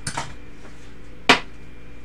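A few brief faint scrapes, then one sharp knock of a hard object on a tabletop about a second in.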